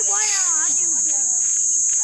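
Steady, high-pitched chorus of insects, unbroken throughout, with a child's voice briefly near the start.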